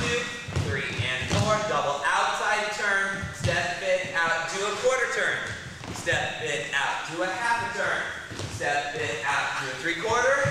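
Speech: one voice talking steadily throughout, with short pauses between phrases.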